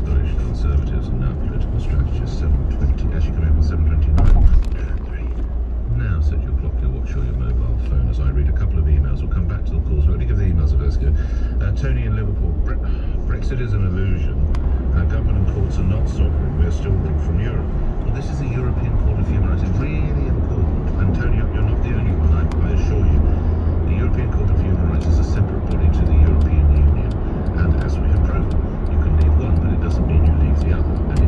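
Inside a car at motorway speed: steady deep tyre and road rumble, with indistinct radio talk under it and a brief louder bump about four seconds in.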